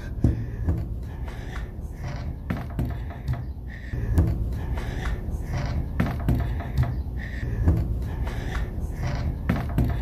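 Amplified, enhanced recording of a small wooden room: a steady low rumble and hiss with scattered knocks and bumps, and brief faint breathy sounds every second or two that the uploader offers as possible whispering.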